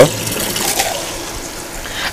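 Filtered water running in a steady stream from the spout of a Cleansui countertop water filter and filling a plastic cup.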